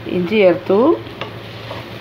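Wooden spoon stirring frying onions and chopped garlic in a nonstick pan, with a few squeaky scraping strokes in the first second over a sizzle.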